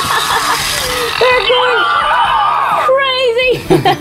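Grumblies electronic plush toys, just switched on by their belly buttons, chattering and grumbling in cartoonish voices, with a high wavering squeal about three seconds in.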